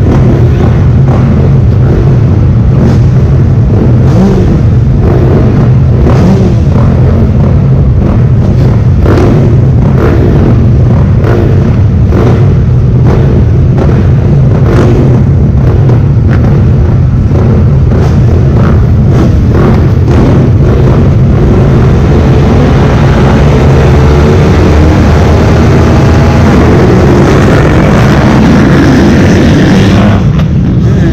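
Several motocross bikes idling together at a supercross starting gate, loud and close to the camera, with repeated throttle blips. In the last few seconds the engines rev hard as the field launches off the gate.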